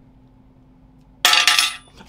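A short pause, then a sudden loud clinking crash about a second in, lasting roughly half a second with a ringing edge, and cutting off abruptly.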